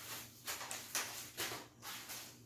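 Soft paper rustles as a kraft paper clasp envelope is handled: a few brief light rustles spread through the moment.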